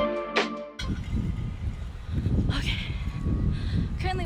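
Background music that cuts off about a second in, followed by an uneven low rumble of wind and handling noise on a phone microphone carried while walking.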